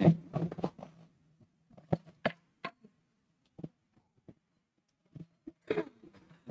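Irregular soft knocks and clicks, a handful spread over a few seconds, from a microphone and its stand being handled and set up.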